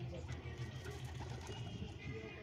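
Feral pigeon cooing, a low, repeated coo.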